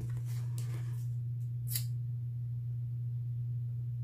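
A steady low hum, with a brief soft swish of paper cards being handled just under two seconds in.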